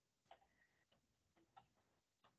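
Near silence, with a few very faint, scattered ticks.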